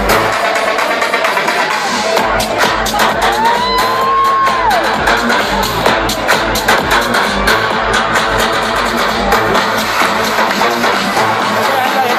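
Loud electronic dance music from a live DJ set played over a festival sound system, recorded from within the crowd, with a steady beat. A single held melodic tone rises and falls about three to five seconds in.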